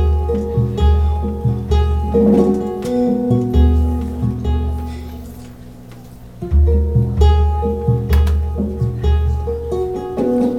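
Live instrumental intro: a ukulele plucking a repeated figure over deep, held low notes. The music thins out about five seconds in and comes back fuller about a second and a half later.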